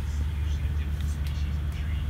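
Steady low hum of a motor vehicle engine running in the background, with a few faint light ticks over it.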